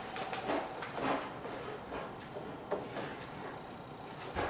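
Faint incidental room sounds: a few soft knocks and creaks with light rustling as a person settles on a wooden piano bench and reaches to an upright piano's keyboard, with no notes played.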